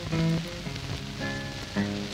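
Acoustic guitar playing a short blues fill of separate plucked notes between sung lines. Hiss and crackle from an old 78 rpm record run underneath.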